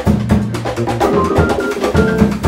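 Live jazz-fusion band playing: a busy drum kit with steady, closely spaced hits under keyboard chords and held notes.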